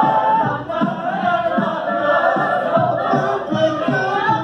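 Mixed-voice a cappella group singing in close harmony, with a low part pulsing steadily about twice a second under the held upper voices.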